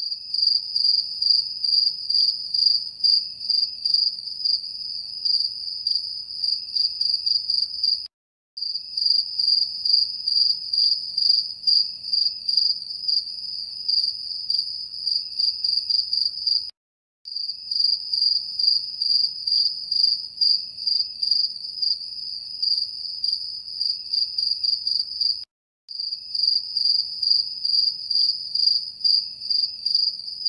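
Crickets chirping in a fast, even, high-pitched pulsing trill. It drops out to silence for a moment about every eight and a half seconds, as a looped recording does.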